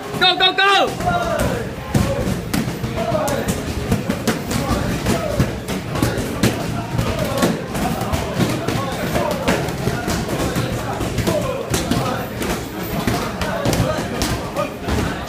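Punches and kicks striking focus mitts and kick pads, many sharp thuds in quick, irregular succession from several pairs at once, over a din of voices and a short shout at the start.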